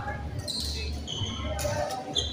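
Indoor badminton rally: rackets strike the shuttlecock with sharp clicks, about half a second and a second and a half in. Sports shoes give short squeaks on the court floor, in a large echoing hall.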